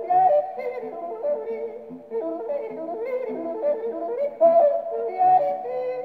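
A man yodeling to guitar accompaniment, played from a shellac record on a wind-up portable gramophone. The sound is thin, with no deep bass or high treble, as is typical of acoustic playback.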